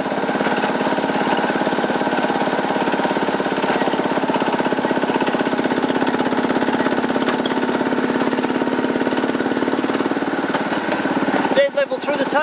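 The Terrier miniature railway locomotive's engine running steadily under load with a fast, even throb as the train pulls up a short, sharp climb.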